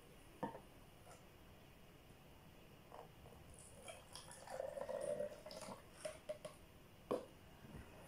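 Water poured from a plastic cup into a small plastic bottle: a faint trickle for about two seconds in the middle. Light clicks of plastic set down on a table come before and after.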